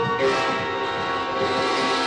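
Orchestral film score holding a sustained chord of many instruments.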